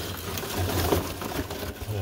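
Die-cut kraft paper packing scraps rustling and crackling as hands dig through them in a cardboard box, a dense run of small papery ticks.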